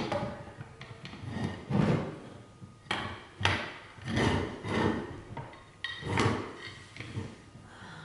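Slabs of slate clattering and knocking against each other and the walking stick's tip as they are set and shifted around it by hand. About a dozen irregular hard knocks, some close together, thinning out in the last second.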